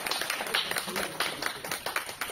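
Scattered clapping from an audience applauding, with voices talking over it.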